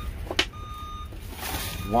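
A vehicle's reversing alarm beeping about once a second, each beep about half a second long, over a low engine rumble. A single sharp click comes a little before halfway.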